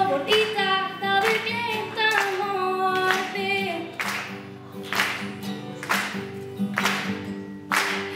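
A young woman sings a slow song in Icelandic to acoustic guitar accompaniment. Her voice stops about halfway through while the guitar and a steady clapping beat, about once a second, carry on.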